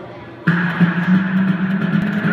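Recorded music for a cheerleading routine starts suddenly about half a second in, after a short lull, and plays loudly with strong low notes.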